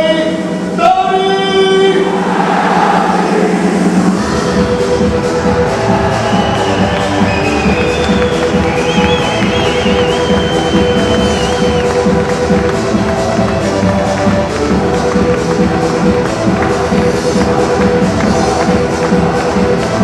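Music with a steady beat, after a brief voice in the first two seconds.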